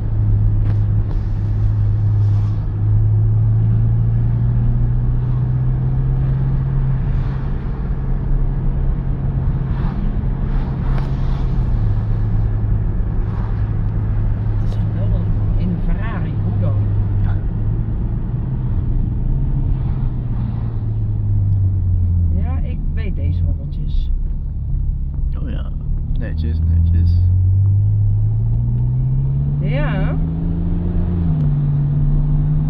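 Ferrari engine heard from inside the cabin while driving: a steady low drone that rises and falls with the revs, dropping low about two-thirds of the way through, then climbing as the car accelerates near the end.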